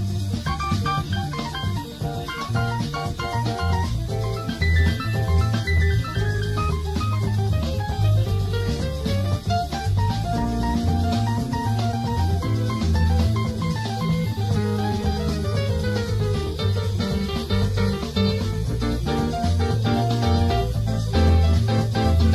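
Instrumental rock band passage: a guitar lead line with gliding notes over bass and drum kit.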